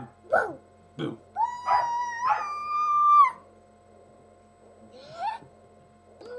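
A voice gives two more short syllables, then a long, high-pitched howl that steps up in pitch about halfway through, and a brief rising squeak near the end.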